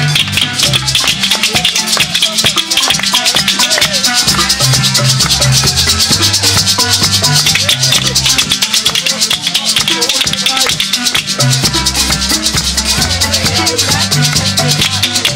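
Live Zimbabwean-style marimba band playing a fast, steady rhythmic groove: quick runs of wooden-bar notes over a moving line of low bass notes, with hand shakers rattling on every beat.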